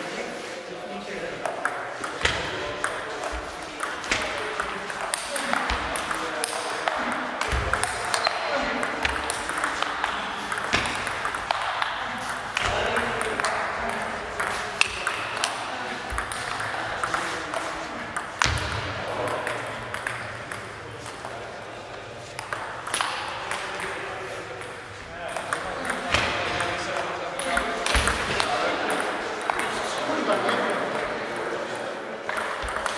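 Table tennis ball clicking sharply off bats and the table again and again through several rallies, with voices murmuring in a large hall.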